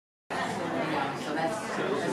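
Background chatter of many voices mixed together, with no clear words.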